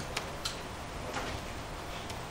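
Three light, sharp clicks spaced unevenly over a steady hum of room noise.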